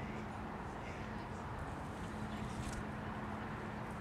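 Steady outdoor background noise with a low, steady hum and faint distant voices.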